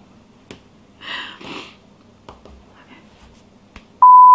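Quiet room with a short breathy burst from a person about a second in, just after a sneeze, and a few faint clicks and taps scattered through the rest.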